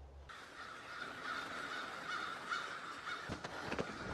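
Crows cawing, a dense chorus of calls that starts a moment in, with a few short knocks near the end.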